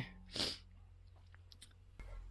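A person's quick, sharp breath about half a second in, then near quiet with a faint low hum.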